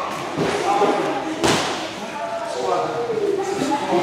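Voices in a large, echoing hall, with one sharp impact about one and a half seconds in.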